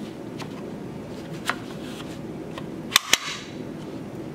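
Plastic child's tray clicking into its side mounts on a stroller frame: a few light plastic clicks and knocks as it is positioned, then two sharp clicks close together about three seconds in as the tray latches on both sides.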